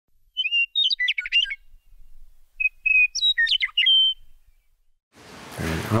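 A bird singing two short phrases with a pause between, each made of a held whistled note and a quick jumble of notes. A man's voice begins near the end.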